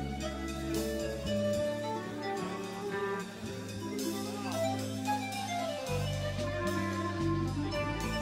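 Live jazz-fusion band playing: sustained low notes and held chords, with a smooth lead line above that glides up and down in pitch.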